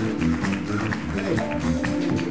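Live band playing a steady groove on drum kit, electric bass, electric guitar and keyboard.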